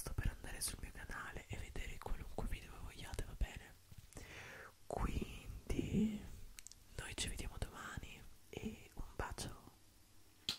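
Close-up whispering into a microphone, broken up by many short, soft clicks.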